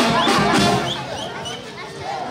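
Street brass band playing, stopping about a second in, after which crowd voices and chatter are left.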